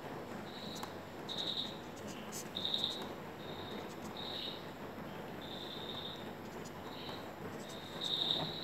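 Insect chirping in the background, likely a cricket: short, high-pitched chirps repeating at uneven intervals, over a faint marker writing on paper.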